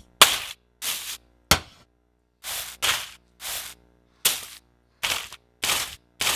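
Synthesized drumstick-impact sounds played as the predicted soundtrack for a drumstick jabbing into shallow water: about nine separate short, sharp hits and scrapes with silence between. They are pasted together from training recordings of a drumstick striking mostly solid things, so they don't match the water, and the presenter calls the result horrible.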